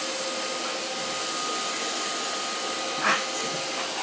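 iRobot Roomba robot vacuum running with a steady whir and a faint hum, with one brief louder sound about three seconds in.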